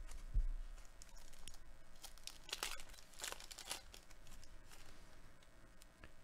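A Panini Select baseball card pack's wrapper being torn open and crinkled by hand as the cards are pulled out: soft scattered crackles, busiest around the middle.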